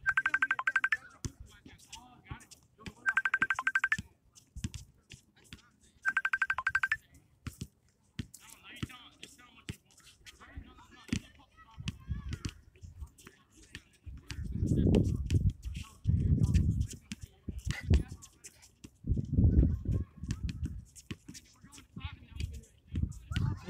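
A telephone ringing: three short trilling rings about three seconds apart, ending after about seven seconds. A basketball bounces on the concrete court as sharp thuds, and there are low rumbling surges near the end.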